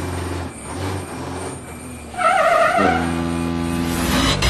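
Semi-truck sound effects in a channel intro, mixed with music: a low steady engine rumble, then about two seconds in a sudden hiss and a steady deep pitched blast, like a truck's air horn.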